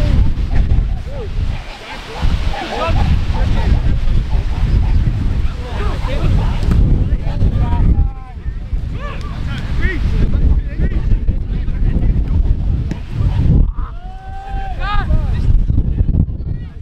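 Wind buffeting the microphone, a heavy low rumble throughout, with scattered distant shouts from footballers and spectators, the loudest near the end.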